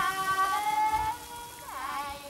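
Background music: a slow melody of held notes with sliding pitch, falling at the start and again near the end, over a steady hiss of rain.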